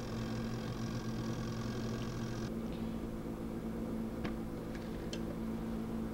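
Benchtop centrifuge running with a steady hum that cuts off suddenly about two and a half seconds in, leaving a low hum. Two light clicks follow near the end.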